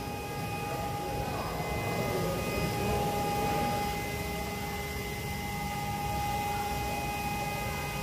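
Steady hum of a large shop's room tone, with a few fixed high tones held over it. Faint background voices are heard in the first few seconds.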